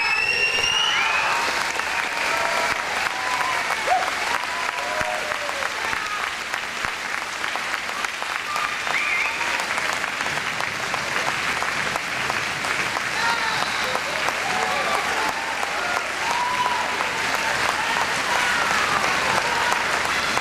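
A large indoor audience applauding steadily, with voices calling out and cheering over the clapping.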